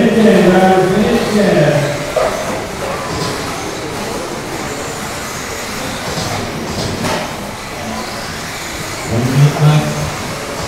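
Steady running noise of 1/10-scale electric off-road RC buggies with 13.5-turn brushless motors racing round an indoor dirt track, echoing in the hall. A race announcer's voice talks over it for the first couple of seconds and again near the end.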